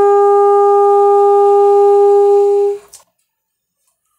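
Alto saxophone holding one long, steady note, the final note of a solo improvisation. It stops a little under three seconds in, followed by a brief click.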